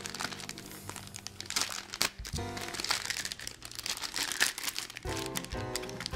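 Clear plastic parts bag crinkling as it is handled and slit open with a pocket knife, with background music playing underneath.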